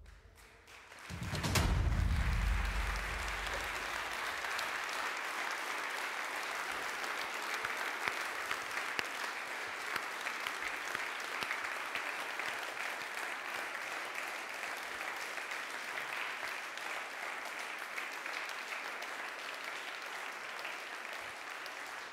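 A deep booming hit about a second in, ending a drumroll, then a small audience applauding steadily, easing off slightly near the end.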